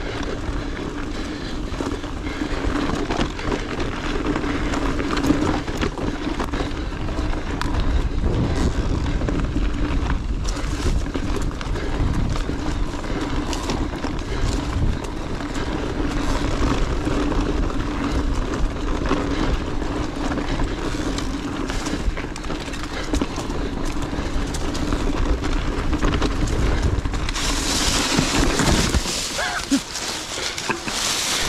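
Mountain bike rolling down a rocky trail: a steady rumble of tyres over rock, with the bike and handlebar-mounted camera rattling. Near the end, a short scraping skid through loose rocks and dry leaves as the bike goes down in a fall.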